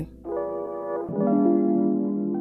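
Background music: held keyboard chords in an electric-piano sound, changing to a new chord about a second in.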